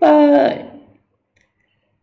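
A man's voice holding one drawn-out syllable for about half a second and trailing off, then silence for about a second.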